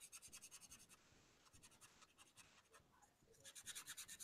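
Faint marker strokes scratching across paper: a quick run of short strokes near the start and another near the end, with near silence in between.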